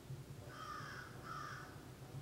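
A bird calling twice, each call about half a second long, over a faint low steady hum.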